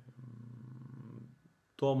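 A man's low, steady closed-mouth hum ('mmm'), the kind made while reading, lasting about a second and a half and then stopping; a spoken word follows right at the end.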